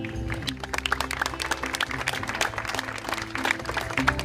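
Scattered audience clapping, many irregular claps throughout, with acoustic guitar notes ringing softly underneath.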